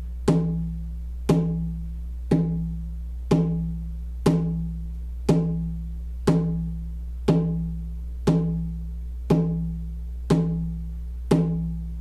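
A hand drum beaten in a slow, steady pulse of about one beat a second, each stroke a pitched thud that dies away before the next: shamanic journey drumming. A steady low hum runs underneath.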